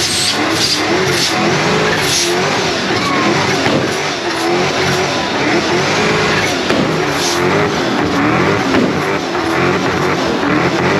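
SN95 Ford Mustang doing a burnout: the engine revs hard, its pitch rising and falling over and over as the rear tyres spin and smoke, with tyre noise underneath.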